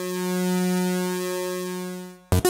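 Arturia MiniBrute 2S analog synthesizer holding a single sustained note at a steady pitch, rich in overtones. It swells a little louder about half a second in, then eases off and fades near the end.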